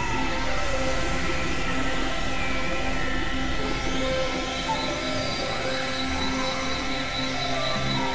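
Dense, layered experimental electronic music: several tracks and synth drones playing over one another as a steady wall of sustained tones, with a few short gliding pitches.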